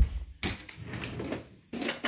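A thump, then a wooden dresser drawer sliding open and plastic toys clattering as a hand rummages through them.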